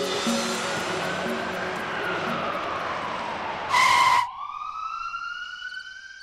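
Police siren wailing in a slow rise and fall over the rush of a moving vehicle, with background music fading out in the first couple of seconds. A loud half-second blast comes about four seconds in, after which the siren carries on alone, growing quieter.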